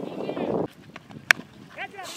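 A murmur of voices on the field cuts off abruptly. Then, a little over a second in, comes a single sharp crack of a cricket bat striking a tennis ball.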